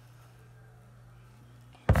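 Quiet room tone with a steady low hum, broken by a sudden loud thump near the end.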